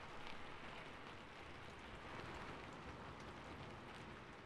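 Faint steady rain, an even hiss of falling drops with scattered small ticks, starting suddenly with the cut.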